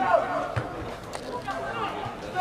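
Faint voices calling out across an open football pitch.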